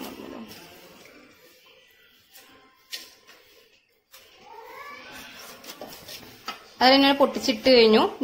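A song with a high, wavering singing voice comes in loudly about seven seconds in, after a few seconds of faint sound and a brief near-silent moment.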